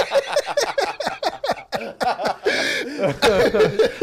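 Men laughing, in quick repeated bursts of voice.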